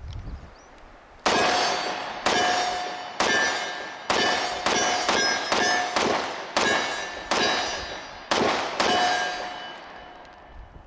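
A string of about a dozen semi-automatic pistol shots, starting about a second in and fired at a steady pace of one to two a second. Each shot leaves a ringing tail that decays into the next.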